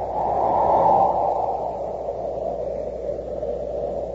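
Steady hiss and low hum of an old radio transcription recording, with no voice over it. The hiss swells slightly about a second in and then holds level.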